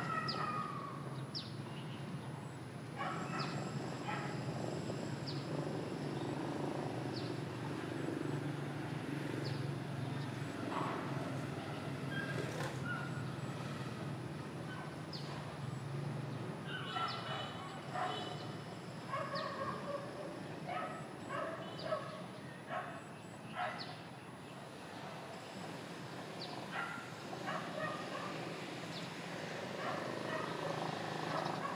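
Tennis ball hit back and forth in a rally outdoors, sharp hits every second or two over a steady low hum. From about 17 seconds a run of short pitched calls joins in for several seconds.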